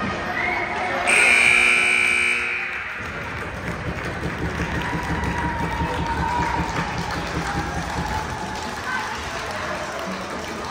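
Ice rink horn sounding once, loud and steady for about a second and a half, starting about a second in, marking the end of the game. Voices and crowd noise follow.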